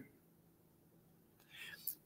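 Near silence, then a faint short breath from the speaker near the end.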